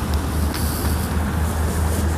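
Steady traffic noise from a busy multi-lane highway: a continuous low rumble of passing cars.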